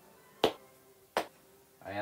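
Two sharp, short clicks about three-quarters of a second apart in a quiet room, the first the louder.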